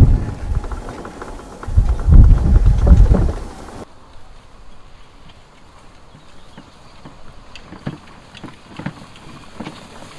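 Wind buffeting the microphone and a low, uneven rumble while riding in a Cushman Hauler Pro-X electric utility buggy over a bumpy grass track; its electric drive adds no engine sound. About four seconds in this cuts off suddenly to a quiet outdoor hush with a few faint ticks.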